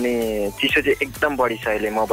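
Radio talk: a voice speaking over background music.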